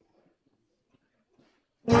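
Near silence with a few faint small sounds, then a jazz big band of brass, saxophones, guitars and drums comes in loud all at once near the end.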